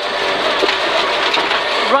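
Peugeot 306 rear-wheel-drive rally car running hard on a gravel stage, heard from inside the cabin: a steady engine note under a dense rush of tyre and gravel noise, with a few faint ticks of stones.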